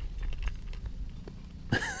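Faint handling noise from a fishing rod and reel and the line as a small bass is lifted out: a few light, scattered clicks and rattles over a low rumble of wind on the microphone.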